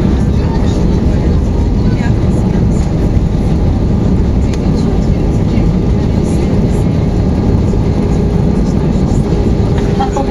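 Cabin noise of an Airbus A320 rolling out on the runway after touchdown with its ground spoilers up: a loud, steady low rumble of the engines and the wheels on the runway.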